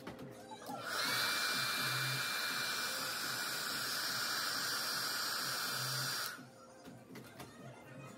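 A handheld hair dryer switched on about a second in, its pitch rising briefly as the motor spins up, then running steadily as a rush of air with a thin high whine, and switched off about six seconds in.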